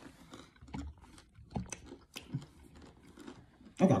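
Chewing and crunching on a dry snack close to the microphone: a scatter of short, crisp crunches.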